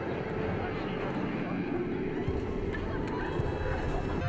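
Steady rushing roar of a large fire, with a deeper rumble joining about halfway through.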